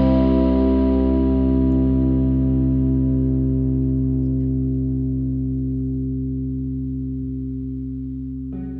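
The band's final chord held and slowly dying away, its brightness fading first, with a regular wavering in its middle tones.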